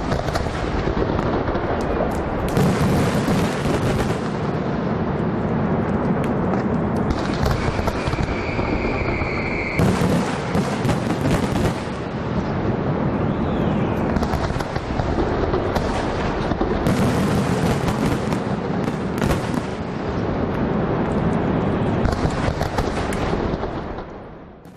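Fireworks going off in a dense, continuous crackle of bangs and pops, with a whistle for a few seconds near the middle, fading out at the end.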